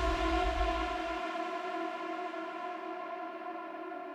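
Electronic dance track in a breakdown: a sustained synthesizer chord fades slowly, and the bass cuts out just over a second in.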